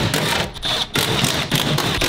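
Cordless impact driver hammering as it undoes the 10 mm nuts on a van's door panel, in three short bursts of rapid rattling.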